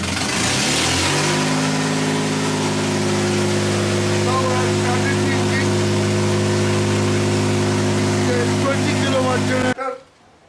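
Gasoline car engine converted to run on biogas, driving a 20 kW generator through a belt drive. It runs up to speed over about the first second, then runs steadily at one even pitch. The sound cuts off suddenly near the end.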